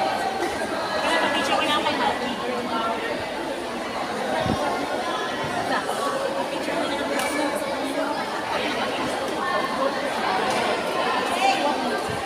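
Crowd of spectators chattering in a large indoor hall, many overlapping voices with a few sharp taps among them.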